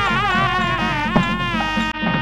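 South Indian temple music played during the harati: a nadaswaram's buzzy reed melody, holding notes with wavering, ornamented bends, over a steady thavil drum beat.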